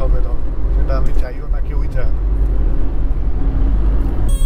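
Cabin noise of a moving Tata Tiago diesel hatchback: a steady low rumble of engine and tyres, with short snatches of a man's voice.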